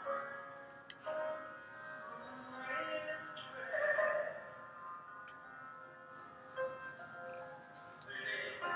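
A song playing: a sung vocal line over sustained instrumental notes.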